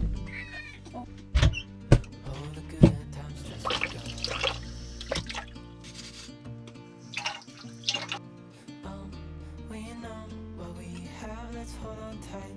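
Background music, with dishwashing at a kitchen sink: a few sharp clinks of dishes in the first three seconds, then short bursts of brush scrubbing and running water.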